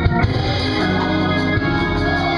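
Live gospel music: a choir with organ and drum kit playing.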